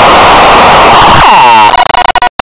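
Heavily distorted, clipped audio effect: a loud, harsh wash of noise, with a rising pitched sweep about a second in that cuts off, then choppy stuttering.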